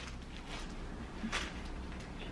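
Quiet room tone: a low steady hum with one brief, soft noise just over a second in.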